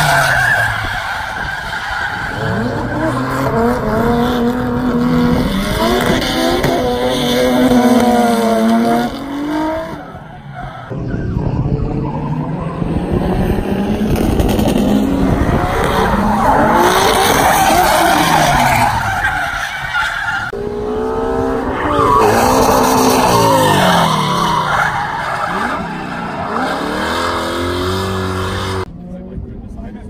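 Drift cars sliding through a corner, their engines revving up and down hard with tyres screeching. The sound cuts off abruptly a few times.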